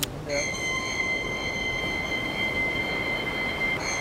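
A steady, high-pitched ringing of several held tones over a soft hiss. It starts just after the music cuts off and holds unchanged, like a sustained drone in a film soundtrack.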